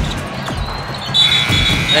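Arena crowd noise, then about a second in the basketball game-end horn sounds: a steady, high two-note tone that marks the final buzzer of overtime as the last three-tenths of a second run out.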